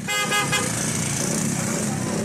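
Street noise of onlookers and traffic, with a short vehicle horn toot in the first half second.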